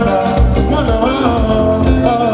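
Live band playing an upbeat dance groove with a drum kit, and a lead singer's voice over it.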